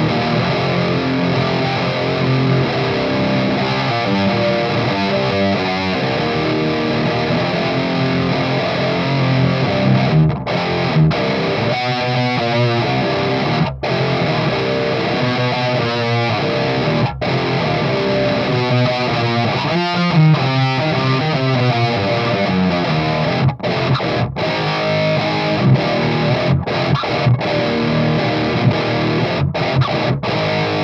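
Electric guitar played through a Haunted Labs Old Ruin distortion pedal into a high-gain amp: heavily distorted riffs of sustained chords and quick repeated chugs, broken by short, sharp stops.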